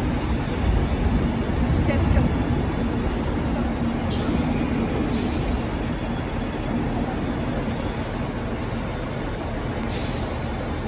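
Avanti West Coast Pendolino electric train moving slowly through a large station: a steady low rumble with a hum that gradually eases off, with a few faint clicks.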